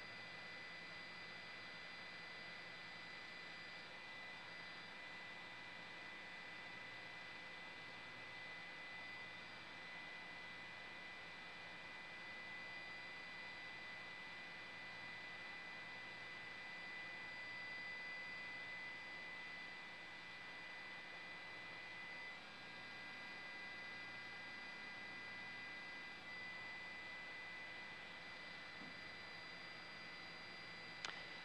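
Faint steady hiss and hum from an open broadcast audio line, with a thin steady high tone running through it.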